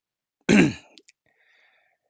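A man clearing his throat once, a short sharp burst about half a second in.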